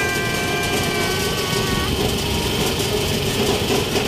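Engine and road noise of a passenger vehicle, heard from inside its open-sided cabin. A steady tone with several pitches is held through about the first two seconds.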